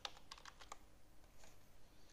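Faint computer keyboard typing: a quick run of keystrokes, most of them in the first second, as a word is typed into a text field.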